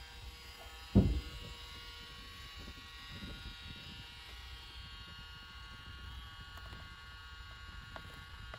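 Steady electric buzz of small motors running, with one thump about a second in and a few faint clicks later.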